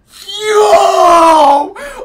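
A man's long, loud, wordless scream of excitement, sliding slowly down in pitch for about a second and a half, followed by a short second yell near the end.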